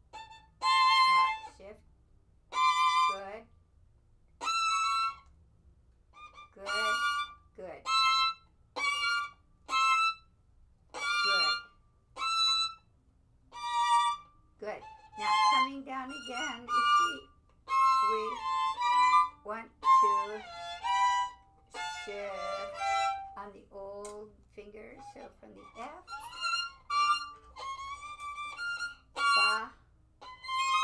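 Violin playing short bowed notes and phrases, one every second or so with brief pauses between, as a shifting exercise. In the middle comes a longer stretch in which the notes slide up and down in pitch between positions.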